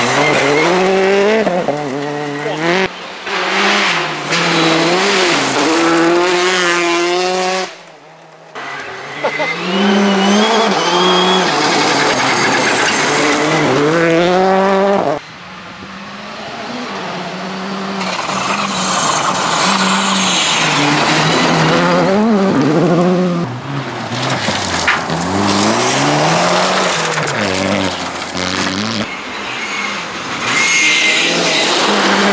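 R5 rally cars, a Citroën C3 R5 among them, racing past on a gravel stage: turbocharged four-cylinder engines revving hard, with pitch rising and falling through gear changes and lifts, over a hiss of gravel and tyre noise. The sound breaks briefly about a quarter of the way in and drops at about the halfway point, where one car's pass gives way to the next.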